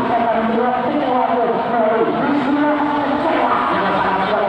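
Voices chanting in long, held tones that bend and glide in pitch.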